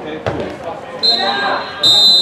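A referee's whistle blowing one long, steady, shrill note, starting about halfway through and getting louder near the end, after a single thump that sounds like a ball being struck.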